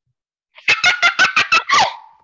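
A boy laughing loudly, a quick run of about seven 'ha's that trails off with a falling pitch.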